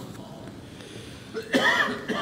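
A quiet pause, then a man's short cough near the end.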